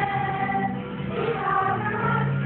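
Children's choir singing, holding notes and moving to new pitches about a second in.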